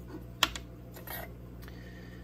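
Light clicks and taps of a paintbrush being set down and small items handled on a tabletop, with one sharp click about half a second in, over a steady low hum.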